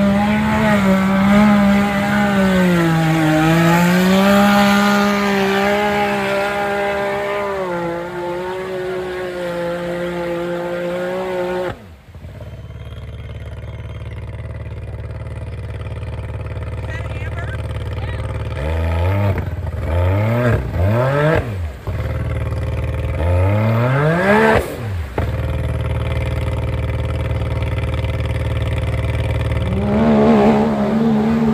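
Side-by-side UTV engine running at high revs as it plows through a mud pit, its pitch dipping and recovering under load. After a sudden cut, a side-by-side bogged down in the mud runs low, and its engine is revved in a few short bursts.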